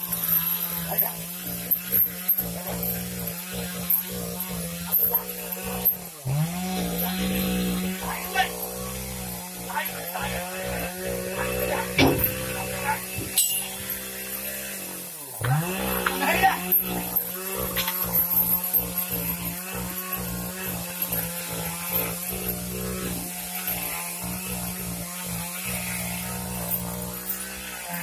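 A small engine running steadily at high speed, dropping and then picking back up about six seconds in and again about fifteen seconds in, with scattered knocks on top.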